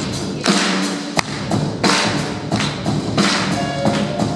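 Live New Orleans–style band music: a sousaphone playing the bass line under sharp drum hits on a steady beat.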